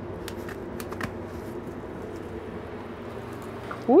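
Rustling and crackling of cannabis branches and leaves as a cut plant is lifted up through trellis netting, with several crisp crackles in the first second, over a steady low motor hum. A short rising voiced 'woo' comes at the very end.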